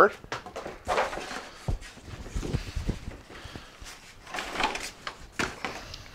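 Cardboard packaging rustling and scraping, with scattered knocks and thuds, as cardboard packing is pulled out of a box and a string trimmer is lifted out.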